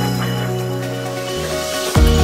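Electronic background music in a break with no drums: held synth chords over a bass note that steps up about a second and a half in. A short sweep near the end leads back into the beat.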